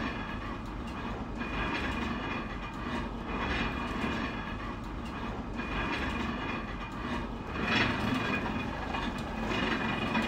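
Row of motor-driven pestle-and-bowl grinders running: a steady mechanical rumble with a rhythmic swell about once a second as the pestles turn in their steel bowls.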